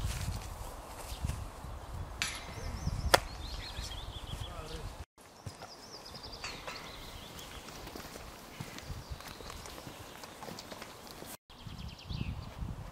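Small songbirds singing and warbling in a spruce forest, over a low rumble at the start. There is one sharp crack about three seconds in, and the sound drops out briefly twice, near the middle and near the end.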